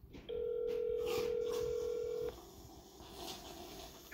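Telephone ringback tone heard through a smartphone's speaker: one steady ring about two seconds long, starting a moment in, while the outgoing call rings unanswered.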